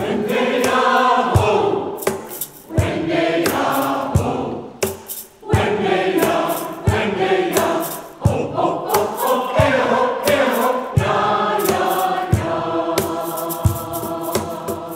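Mixed church choir of men and women singing an anthem in phrases, with piano accompaniment.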